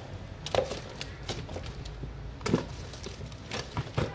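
Scattered sharp clicks and knocks, the two loudest about half a second and two and a half seconds in, over a steady low hum.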